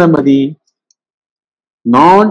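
A man speaking Tamil in short phrases. After the first phrase the sound drops to dead silence for over a second, with hard cut-offs at each edge, before his voice resumes near the end.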